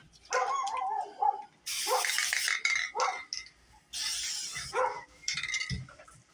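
Aerosol spray paint can hissing in two bursts of about a second each, with several short pitched calls in between.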